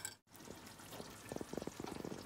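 Faint bubbling of a pot cooking on the stove, with a quick run of small pops in the second half.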